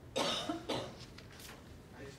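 A person coughing twice in quick succession, the first cough the louder and longer.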